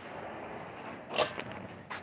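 Shuffling footsteps on a concrete floor and rustling handling noise from a handheld camera being carried along, with one sharper scuff about a second in.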